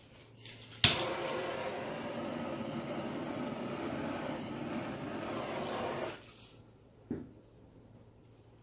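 Handheld butane torch clicked alight, then burning with a steady hiss for about five seconds before it cuts off; another short click follows about a second later.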